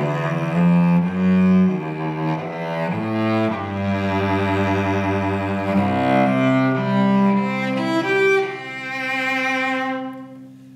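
A cello strung with Thomastik-Infeld Versum Solo strings, bowed in a slow melody of held notes that ends on a long sustained note.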